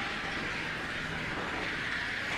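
3 lb combat robots' motors running, a steady whir under the arena's background noise.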